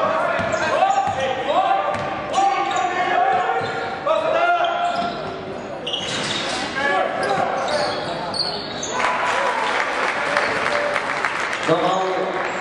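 Live basketball game in a gym hall: voices calling out over the court, a basketball bouncing on the hardwood, and, from about nine seconds in, a louder rush of crowd noise.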